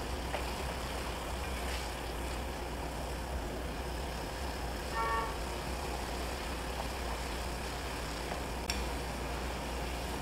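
Water at a hard boil in a steel saucepan on a gas burner: a steady low rumble and hiss. A brief faint tone comes about halfway through, and a light click near the end.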